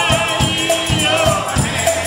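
Gospel choir and a lead singer singing with instrumental backing, with hand clapping to a steady beat.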